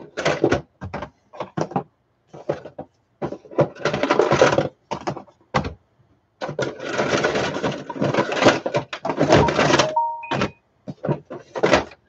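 Loose salvaged batteries clattering and rattling against each other and a hard plastic tub as they are rummaged through and picked out by hand. There are scattered knocks and two longer runs of dense rattling, and a short squeak about ten seconds in.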